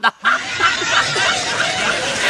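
Laughter breaking out right after a joke's punchline, starting about a quarter second in and running on steadily.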